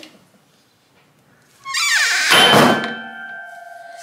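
Bud's Woodshop multi-wire soap loaf cutter: the frame of taut steel wires is pushed down through a loaf of cold process soap with a sliding sound that falls in pitch. About two and a half seconds in, the frame bottoms out with a thunk, and the tensioned wires ring on in a few steady tones for about a second.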